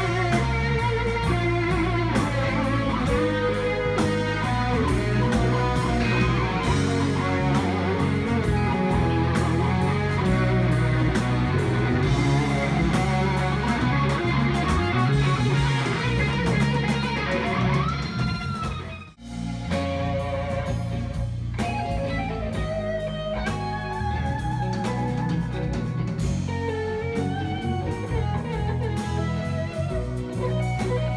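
A live rock band of several electric guitars playing over a drum kit. A little under two-thirds of the way in, the music drops out for a moment and comes back on a different passage.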